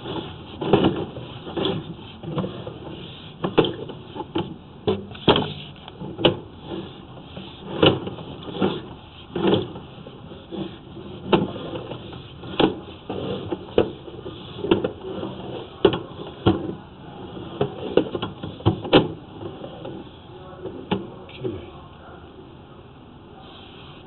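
Irregular knocks, clicks and rattles, about one or two a second over a low rumble, as a sewer inspection camera's push cable is drawn slowly back out of the pipe.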